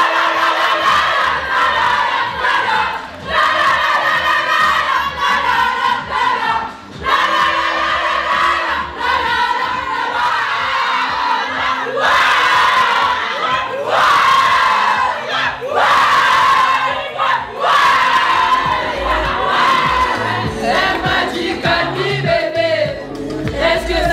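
A group of young women singing and chanting together loudly, in phrases broken by short pauses every couple of seconds, with music playing underneath.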